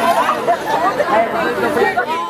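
Several people talking at once, their voices overlapping into chatter with no band playing.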